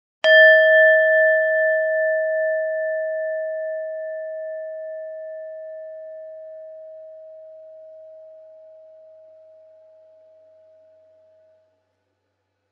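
A brass singing bowl struck once with a wooden striker, ringing with a clear tone and higher overtones that fades slowly over about eleven seconds with a gentle wavering. It is rung to open a moment of silent reflection.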